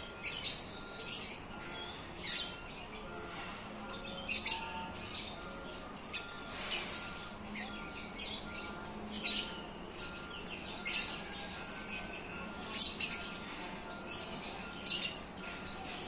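Birds chirping, with sharp, high calls coming every second or so.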